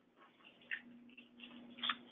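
A few faint, short ticks over a low, steady hum.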